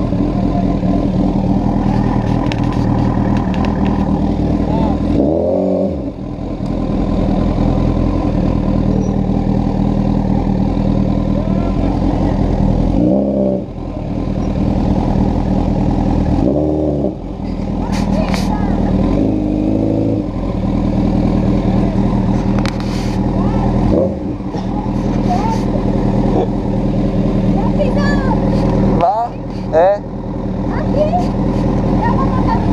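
Honda CBR1000RR Fireblade's inline-four engine running under way at low town speed, a steady engine note that briefly drops away and swings back in pitch about five times through the ride.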